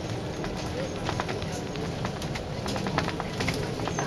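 Volvo Olympian double-decker bus driving, heard from the upper deck: a steady low engine rumble with frequent sharp clicks and rattles from the bodywork and fittings.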